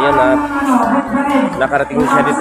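A man's voice speaking to the camera in drawn-out, held syllables, with other voices around him.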